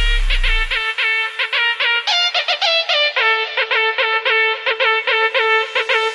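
Arabic remix music: a fast run of short, pitched lead notes over a steady held drone. The deep bass drops out about a second in.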